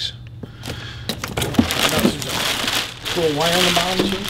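Clear plastic packaging bag crinkling and rustling as it is handled, with a few sharp clicks.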